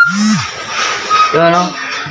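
Brief voice sounds: a short pitched vocal sound at the start and a snatch of speech-like voice about a second and a half in.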